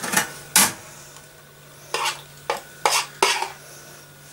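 Margarine being scraped out of a plastic kitchen-scale pan with a utensil: about six short scrapes and knocks, spaced irregularly.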